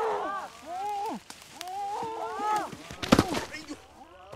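Frogs calling at night, overlapping calls that each rise and fall in pitch, repeating every second or so. A single sharp crack sounds about three seconds in.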